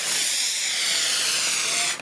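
Model rocket motor firing at liftoff, a steady loud hiss of exhaust that cuts off suddenly near the end.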